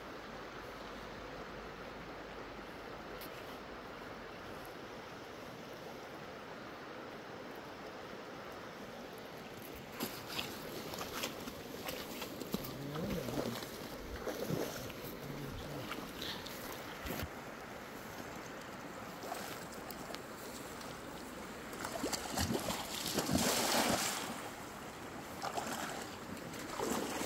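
Steady hiss of a shallow river, then from about ten seconds in irregular splashing and rustling, loudest a couple of seconds before the end, as a man wades through the shallow water in rubber boots.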